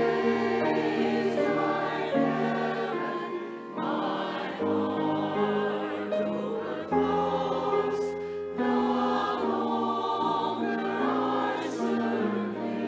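Mixed church choir singing in harmony, slow sustained chords that change every second or two.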